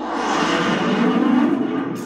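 A loud, dense rushing sound from the TV episode's soundtrack, swelling to a peak about a second and a half in and then easing off slightly.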